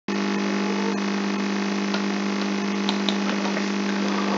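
Steady electrical hum with hiss: one constant low tone with overtones, unchanging throughout, with a few faint ticks.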